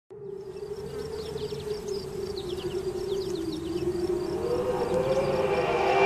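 A buzzing insect, steady with a slowly wavering pitch, over many short, high falling chirps, fading in gradually.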